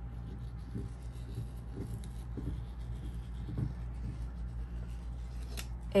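Scissors cutting across a tissue-paper sewing pattern piece, a few soft, irregular snips and paper rustles over a steady low background hum.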